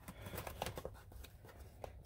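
Faint handling noise: a few light clicks and rustles as a small cardboard-and-plastic retail box is moved about and set down.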